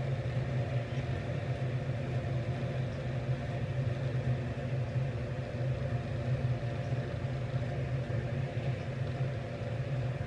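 A steady low mechanical hum, like a motor or fan running, unchanging throughout.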